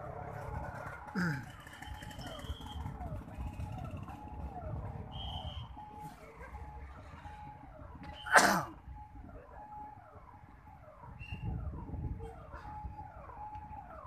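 Outdoor crowd murmur with a faint, regular falling call repeating about twice a second. A sudden loud, sharp call with a falling pitch stands out about eight seconds in, with a smaller one just after a second in.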